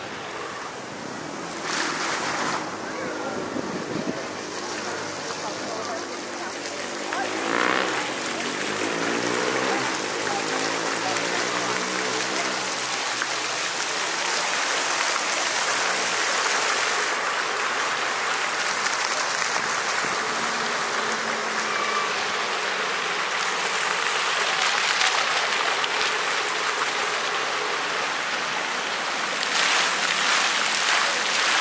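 Fountain water jets splashing into a stone basin: a steady rushing that grows louder over the first ten seconds and then holds.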